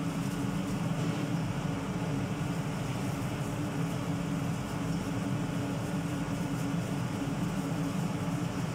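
A steady, unchanging low mechanical hum, like a running fan or motor.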